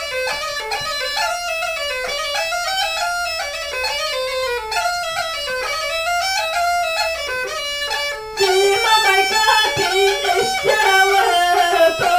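Bulgarian gaida (bagpipe) playing an ornamented folk melody in an instrumental interlude. About eight seconds in, a woman's singing voice joins it and the sound gets louder.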